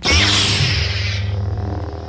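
Lightsaber igniting: a sudden loud rush that fades over about a second into a steady low hum.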